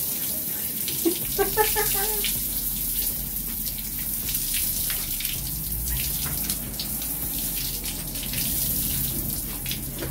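Backyard shower running: a steady stream of water pouring from an overhead pipe and splashing on a person's body and the ground below, with a short voice sound about a second and a half in.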